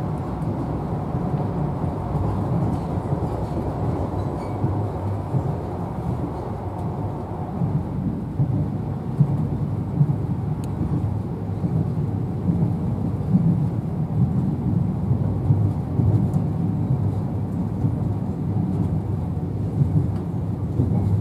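Running noise of a Class 43 HST (InterCity 125) train at speed, heard from inside a passenger coach: a steady deep rumble of wheels on the rails.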